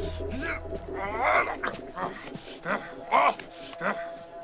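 Growling, animal-like creature calls, rising and falling in pitch, loudest about a second in and again after three seconds, with a laugh near the end. A low drone underneath fades out before the halfway point.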